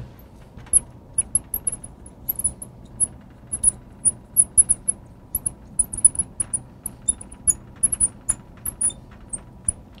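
A marker squeaking on a glass lightboard as words are handwritten: many short, high squeaks in quick, irregular succession.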